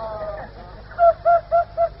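A person weeping in the audience of an old tape recording: a drawn-out falling wail in the first half second, then a quick run of short sobbing cries about a second in, over a steady low tape hum.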